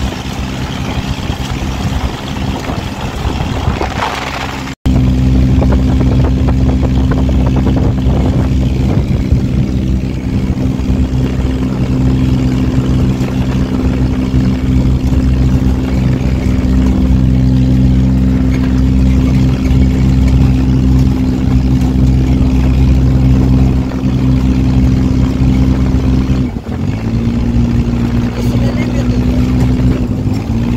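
Dune buggy engine running at a steady pitch while driving over desert sand, with wind and road noise; the sound breaks off for an instant about five seconds in and comes back louder, and the engine note shifts slightly near the end.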